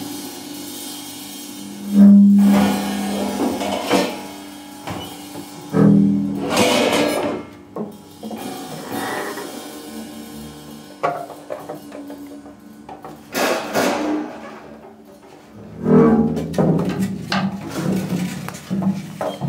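Free-improvised music for percussion, double bass, guitar and electronics: sparse, irregular attacks and scrapes over low held tones, with the strongest hits about two seconds in and near the end.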